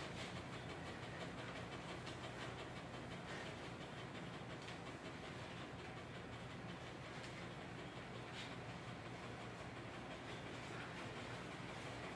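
Faint, steady low hum of room noise, with a few soft, scattered scratches from a grooming rake being worked through a dog's thick double coat.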